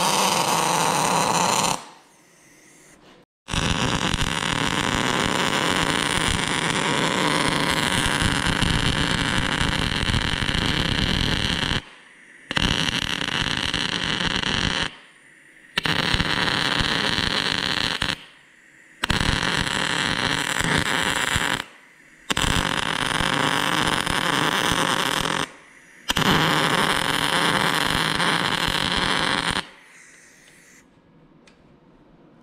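MIG welder arcing on the spider gears of a Land Rover rear differential in seven runs of steady crackle, each broken by a short pause. The gears are being welded solid to lock the rear diff.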